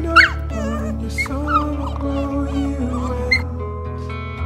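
Pit bull mix puppy whimpering and yipping in a few short, high cries: a sharp pair at the start, more about a second in and one near the end. Background music with held notes runs underneath.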